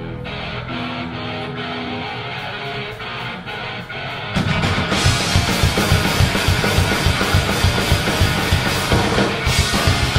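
Live punk rock band with electric guitars, bass and drums starting a song. It opens on a guitar intro, and the full band crashes in about four seconds in, louder, with a steady driving drum beat.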